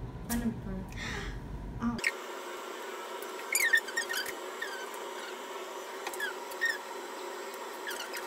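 A woman's high-pitched giggles and squeals in short bursts, each sliding down in pitch, loudest about four seconds in.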